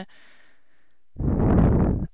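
A person's sigh, a loud breath blown into the microphone a little past a second in, after a second of faint background hiss.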